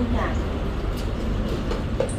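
Steady low rumbling background noise, like a running fan or machine, with faint ticks about a second in.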